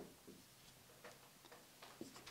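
Faint, irregular ticks and small scratches of a marker writing on a whiteboard, about a half dozen short strokes over two seconds.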